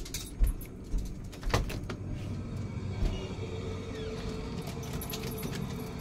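A few sharp knocks and clicks of handling in the first three seconds, then a steady low mechanical hum.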